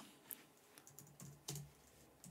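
Faint typing on a computer keyboard: a handful of separate, irregularly spaced keystrokes.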